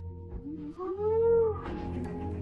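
A woman's drawn-out exclamation of surprise, an "ohh" that rises and then falls in pitch for under a second, over soft background music.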